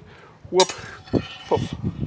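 Steel longsword blades clinking and scraping against each other in a bind, with a shuffling step on stone paving.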